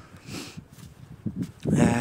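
Faint rustling in a lull, then a man starts speaking near the end.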